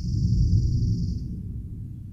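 Low rumbling background noise fading away, with a high hiss that cuts off a little over a second in.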